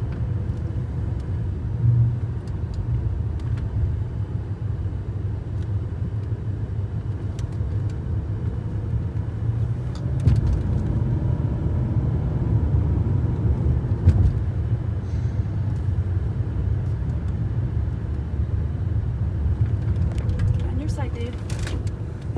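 Low, steady rumble of road and tyre noise inside the cabin of a 2008 Lexus LS 460 L at speed, with a few brief bumps from the road surface.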